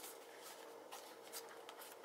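Faint rustle and light scraping of a paperboard box being opened by hand, its flap and paper insert sliding against the card, with a few soft ticks.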